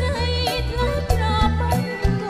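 A woman singing with a wavering vibrato over a live band, with steady bass notes and drum hits about twice a second.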